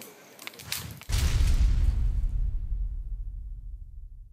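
End-card sound effect: about a second in, a sudden deep boom with a short whoosh, which then fades away slowly. Before it, faint outdoor background with a few light clicks.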